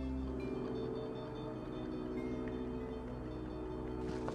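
Soft ambient background music: held chords over a low drone, with a few sparse high notes. The low drone drops away about half a second in.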